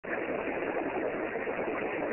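Steady outdoor background noise, an even hiss with no distinct sounds standing out.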